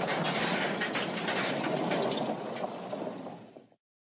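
Wooden toy trains clattering in a crash: a dense rattle of small knocks and clinks that fades away and stops just before the end.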